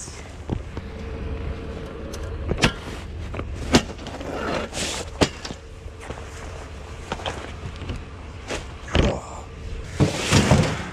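Scattered sharp knocks and rattles of folded metal pop-up canopy frames in fabric carry bags being handled, carried and lifted into a pickup truck bed. The loudest knock comes near the end. All of it sits over a low steady rumble.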